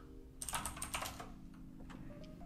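Faint, quick run of keystrokes on a computer keyboard about half a second in, with one last keystroke near the end: a reboot command being typed into a terminal and entered.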